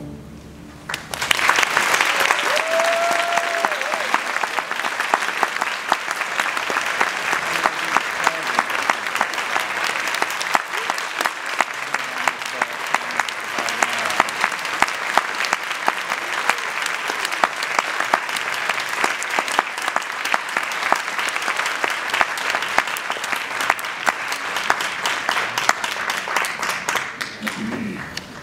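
Audience applauding in a hall, breaking out about a second in as the orchestra's final chord stops, with a short whistle soon after.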